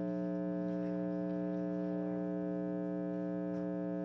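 A steady, unchanging electronic hum of several held tones at once, even in level throughout.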